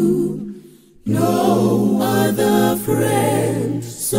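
A cappella gospel vocal group of male and female voices singing a hymn in close harmony. The voices fade to a brief break about half a second in, then come back together about a second in, with a low bass part under the chord.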